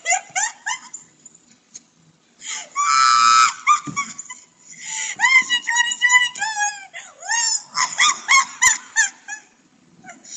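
A woman laughing hard in high-pitched bursts and squeals, loudest about three seconds in.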